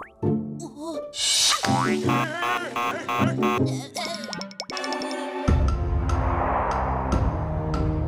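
Cartoon soundtrack music with comic sound effects: a rising swish, then wobbling boing-like tones. About five and a half seconds in, a fuller music cue with a strong bass line takes over.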